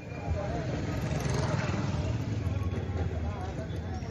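Outdoor background sound: a steady low rumble with faint, indistinct voices over it.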